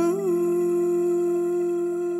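A woman singer holds one long note of a slow Malay ballad over a soft, sustained backing chord. There is a short turn in pitch just after the start.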